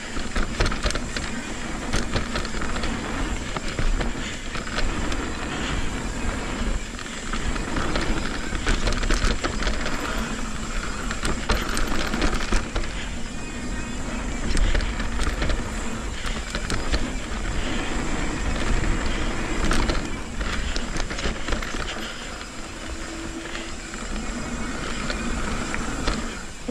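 Full-suspension mountain bike descending a dry dirt jump trail at speed, heard from a camera on the rider's helmet: steady tyre rumble and wind noise on the microphone, with frequent rattles and knocks of chain and frame over the bumps and jumps.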